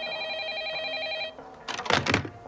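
Corded desk telephone giving a steady, rapidly pulsing electronic ring tone that cuts off about a second and a half in. Near the end comes a short clatter as the handset is put back down on its base.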